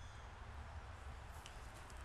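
Quiet room tone with a steady low hum, and a few faint soft handling sounds, about one and a half seconds in, from a cloth being dabbed into a jar of metal polish.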